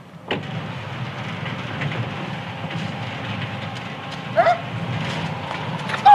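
A steady engine rumble starts suddenly just after the beginning and runs on, with a brief high-pitched yelp about four and a half seconds in.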